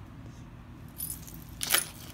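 Small metal objects jingling as a hand rummages among things on a cluttered dresser top: a short jingle about a second in and a louder one near the end.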